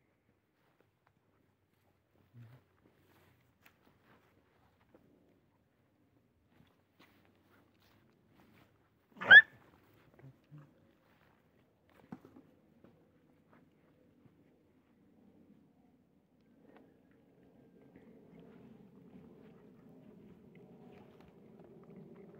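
Mostly quiet, broken about nine seconds in by a single short, sharp yelp from one of the dogs crowding the food tray. In the last few seconds, dogs chewing and eating tortillas.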